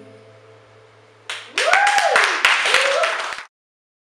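The song's last note fades away, then about a second in an audience breaks into clapping and cheering with a whooping voice; the sound cuts off suddenly near the end.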